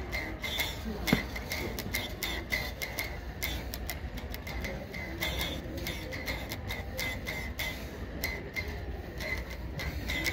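Homemade tube zither, thin strings stretched along a length of pipe, plucked and strummed in a brisk rhythm of sharp, clicky plucks, several a second.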